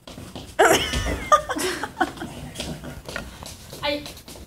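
A woman's high, wavering wordless squeals and whimpers in a few short outbursts as she struggles out of a coat.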